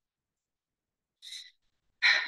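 Near silence, broken about a second and a quarter in by one short breathy sound: a woman's intake of breath before she speaks.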